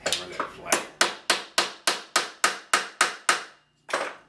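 A hammer striking repeatedly in a steady rhythm: about ten sharp blows at three to four a second, each ringing briefly, with one more blow at the very end.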